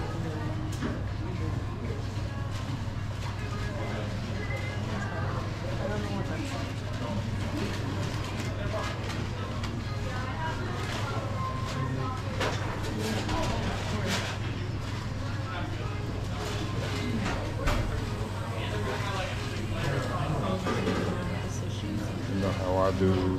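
Fast-food restaurant dining-room ambience: background chatter from other customers and background music over a steady low hum, with a few scattered clicks and clatters, the loudest about eighteen seconds in.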